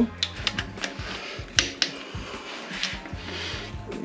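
Background music with a low bass line, under scattered light clicks and clinks of hand tools being handled on an engine; two sharper clicks stand out about a second and a half in.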